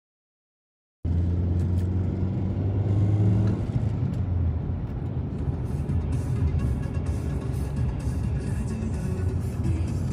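Background music over the low rumble of a car driving, heard from inside the car. The sound begins about a second in, after silence.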